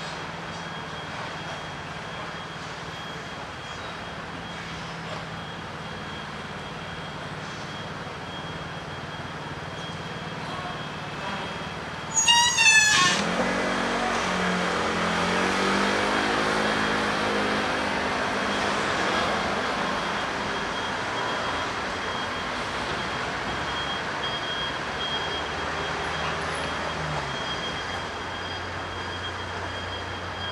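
City street traffic noise. About twelve seconds in, a short, loud, wavering high squeal cuts in, then an engine runs with a low pitched drone and the traffic swells for several seconds before settling.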